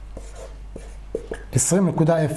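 Marker writing on a whiteboard: a handful of short, separate strokes and squeaks. Near the end a man's voice reads out a number.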